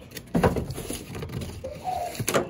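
Unpacking noises: a plastic bag and a molded pulp packing tray being handled, with a knock about half a second in. A short pitched sound comes near the end.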